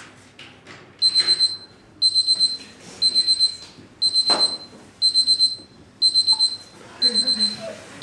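Electronic alarm or timer beeping: a high-pitched beep sounded in quick groups of four or five, one group every second, starting about a second in.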